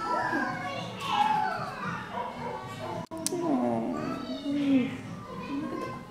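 Dogs whining and yipping in shelter kennels, mixed with people's voices talking.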